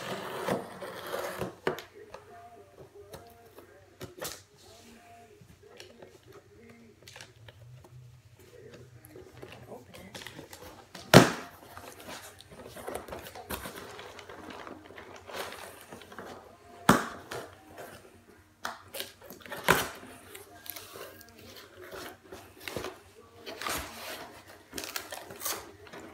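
A cardboard shipping box being cut open with scissors and unpacked: the blades slice the packing tape, and the cardboard flaps and contents rustle and scrape. Irregular clicks run throughout, with a few sharp loud snaps, the loudest about 11 seconds in.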